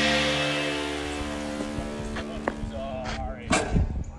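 Background music fading out on a long held chord, followed by a couple of sharp thumps near the end.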